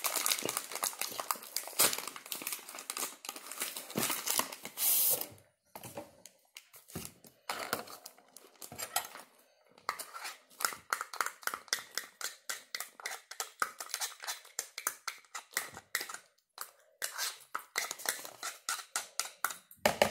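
Spoon scraping and tapping inside a plastic measuring cup in quick repeated strokes, several a second, working thick lotion out of it. Powdery cornstarch is poured from its packaging, with a loud rustle about five seconds in.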